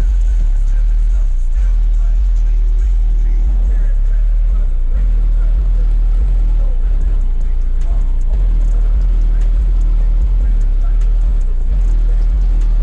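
Car audio system with a wall of subwoofers playing bass-heavy music at high volume, heard from outside the car: a loud, steady deep bass with a voice over it.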